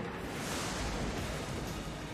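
Online slot game's thunder-and-lightning sound effect: a rushing crackle of noise over a deep rumble, swelling during the first second. It marks the free-spins bonus being triggered, with the game's music faintly underneath.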